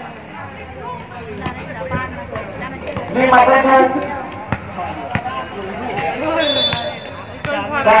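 A volleyball bounced a few times on a hard court surface, sharp separate thuds, as the server readies to serve, under the chatter of players' and spectators' voices.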